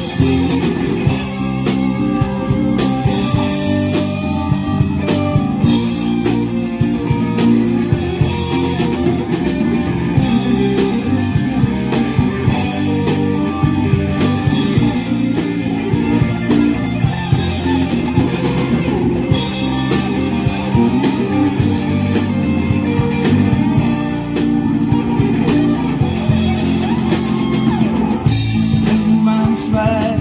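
Live rock band playing a loud, guitar-led passage: electric guitars, bass and drum kit, with keyboard.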